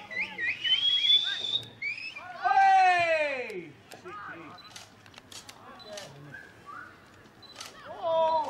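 Wordless shouting from voices at a junior Australian rules football match, with one long, loud yell falling in pitch about two and a half seconds in, followed by a quieter stretch with a few sharp clicks.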